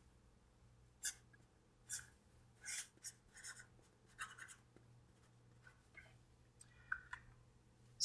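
Felt-tip marker writing on paper: a faint run of short, separate strokes with small gaps between them.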